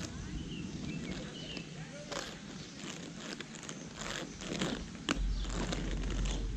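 Footsteps on a paved path, a scattering of irregular light steps and scuffs, with a steady low rumble coming in about five seconds in.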